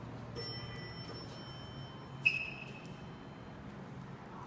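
Elevator hall chime: a ringing tone with bright overtones sounds about a third of a second in and is struck again about a second in, then a louder, sharper ding a little past two seconds rings away.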